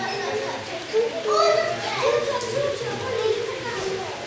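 Several children's voices chattering and calling over one another in a crowd of onlookers.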